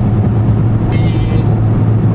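A moving car's cabin noise while driving: a steady low drone of engine and road noise that holds constant with no change in pitch.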